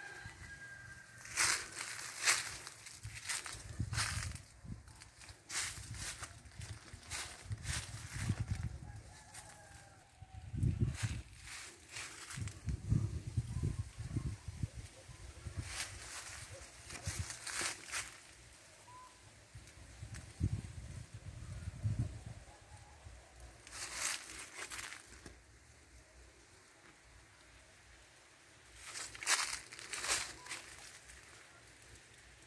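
Dry leaves and brush crackling in irregular bursts as someone pushes through dense vegetation, with low rumbling bursts on the microphone. A few faint bird calls are heard in the background.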